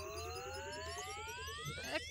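Animated-show sound effect: a layered electronic whine rising steadily in pitch, the charge-up of an energy weapon before it fires.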